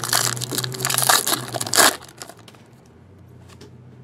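Foil wrapper of a trading card pack crinkling loudly as hands open it, for about two seconds, then only a few faint rustles.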